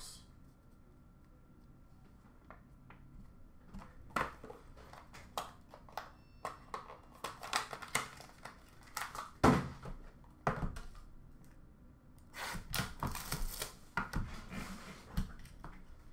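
Cardboard trading-card boxes and cards being handled: scattered light knocks and clicks, then a denser stretch of rustling and crinkling about three-quarters of the way through.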